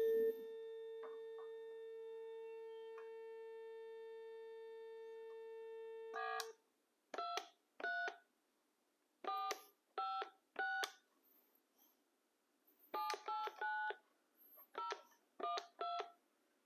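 Corded desk telephone on speakerphone playing a steady dial tone, which cuts off about six seconds in as dialing starts. About a dozen short DTMF keypad beeps follow as a number is dialed: several spaced about a second apart, then a quick run of them.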